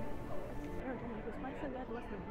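Casino floor ambience: music and melodic electronic tones with indistinct background voices.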